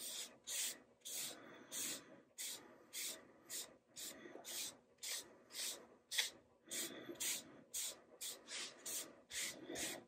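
Folded shop towel wet with alcohol-based dye, rubbed back and forth over a bare quilted maple guitar body: a faint, even run of soft hissy wiping strokes, nearly two a second.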